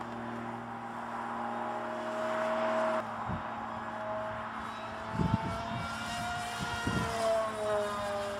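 Electric motor and propeller of an RC foam jet (Just go fly 550T motor spinning a 7x5 prop) whining overhead, its pitch slowly rising and falling as the plane flies past and the throttle changes. A few low thumps come in about three, five and seven seconds in.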